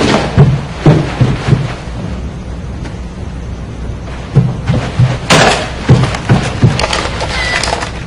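A series of dull, low thumps in two clusters, the first near the start and the second about four to six and a half seconds in. A sharper knock comes a little after five seconds.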